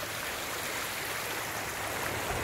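Hot-spring stream running shallow over rocks and small cascades: a steady rush of water.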